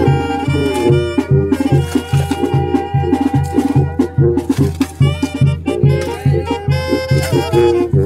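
Latin band music with brass and percussion over a steady bass beat, about two beats a second.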